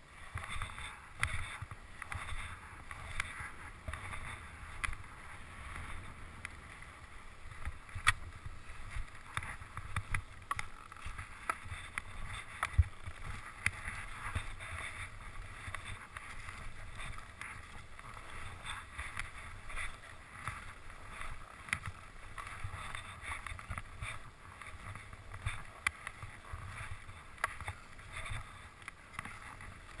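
Skis sliding and scraping over snow on a fast downhill run, a continuous hiss with frequent sharp clicks and knocks, heard through a helmet-mounted camera with a low rumble of wind and buffeting.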